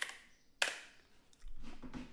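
Computer keyboard keystrokes: a light tap at the start and one sharp, loud key click about half a second in as the command is entered. A low voice murmur begins near the end.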